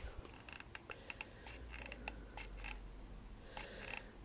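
Faint scattered clicks and light taps as a hot glue gun is squeezed and pressed against a small pendant and its pin, the gun not quite hot enough to let the glue flow.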